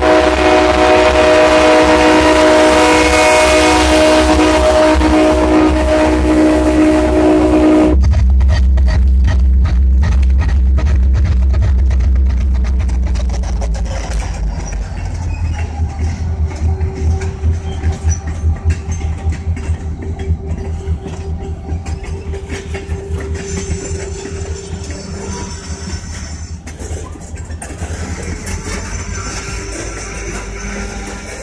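Diesel locomotive air horn blowing one long, steady chord for about eight seconds before cutting off sharply, over the low rumble of the locomotives' diesel engines. The horn is sounded for the grade crossing. After it, loaded tank cars roll past with a rhythmic clickety-clack of wheels over rail joints.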